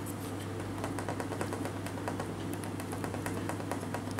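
A kitten licking and chewing meat off a knife blade, making a quick, irregular run of small clicks and smacks over a steady low hum.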